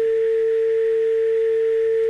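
A steady, unbroken single-pitch telephone line tone, like a dial tone, coming over the studio's call-in phone line as the caller's voice drops out.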